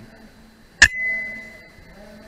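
A single shot from an FX Dreamline .177 PCP air rifle a little under a second in: one sharp report followed by a clear ringing tone that fades out over about a second.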